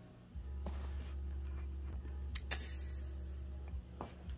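A sneaker being handled and turned close to the camera microphone: hands rubbing and scraping on the suede and fabric upper, with a low rumble of handling noise. A sharp click about two and a half seconds in is followed by a brief hiss.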